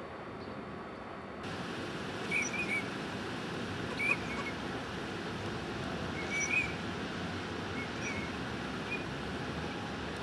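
Short whistled chirps of Eurasian teal drakes, a few at a time and scattered through the clip, over a steady outdoor background hiss that grows louder about a second and a half in.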